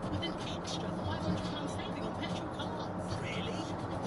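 Steady in-cabin drone of a vehicle cruising on a motorway: engine and tyre noise, even throughout.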